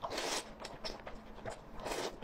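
Close-miked eating sounds: a noisy slurp as a broth-soaked piece of food goes into the mouth, then wet chewing clicks, and another short slurp near the end.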